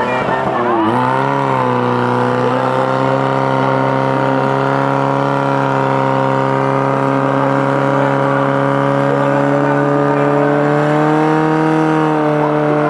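Portable fire-pump engine running flat out while pumping water through the attack hoses to the target nozzles. It makes one steady high engine note, which dips briefly about a second in as the load comes on and then holds.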